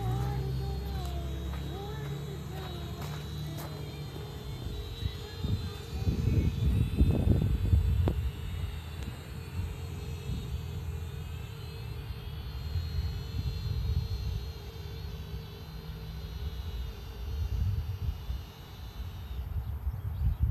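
Small quadcopter drone flying overhead, its propellers giving a steady high whine that wavers slightly and stops near the end. Wind rumbles on the microphone throughout, gusting louder around six to eight seconds in.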